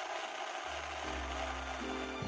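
Television static sound effect: a steady hissing noise that starts suddenly, with low music notes coming in under it after about half a second.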